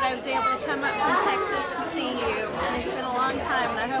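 Voices of several people talking at once: room chatter.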